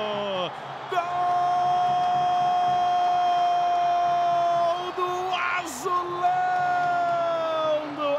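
A television commentator's long drawn-out goal cry, held on one high note for about four seconds, then after a brief break held again and falling away, over crowd cheering in the arena.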